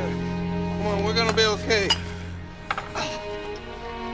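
Film score with soft held notes, over which a man makes wordless, distressed sounds with his voice, falling in pitch, between about one and two seconds in.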